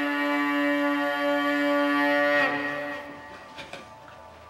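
Tuvan igil, a two-string bowed fiddle, sounding a long held note rich in overtones. It stops about two and a half seconds in, leaving only faint clicks and room sound.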